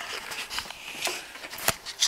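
Handling noise as the camera rubs against clothing: a scratchy rustle with a few light clicks and one sharper click near the end.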